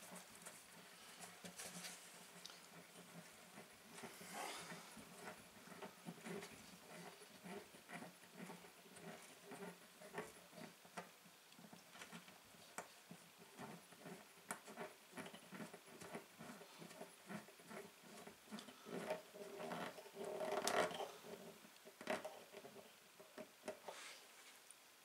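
Faint small clicks and scratches of a plastic clamping knob being threaded and hand-tightened down a threaded rod through an acoustic guitar's bridge pin holes, pressing the lifted bridge down onto the top. There is a louder patch of rustling handling near the end.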